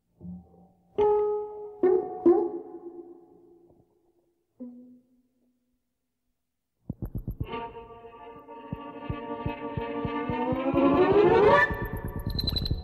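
Early-1970s electroacoustic music for violin and live electronics. A few sparse plucked or struck notes ring and fade in the first few seconds. After a short silence, a pulsing electronic tone rich in overtones starts about seven seconds in, speeding up, rising in pitch and growing louder until it cuts off suddenly near the end.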